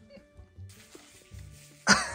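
Background music with a steady low beat. Near the end a sudden, loud, high-pitched squeal from a young child, wavering and sliding down in pitch.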